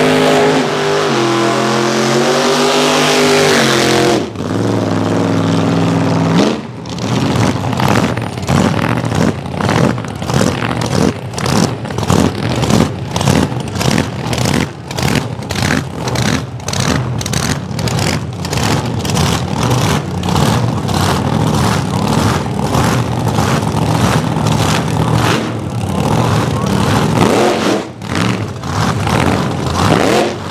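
Supercharged engine of a 1933 Willys AA/GS gasser held high in a burnout, its pitch wavering over the tyre-spin noise, then cut off sharply about four seconds in. From about seven seconds on it idles with a choppy, loping beat.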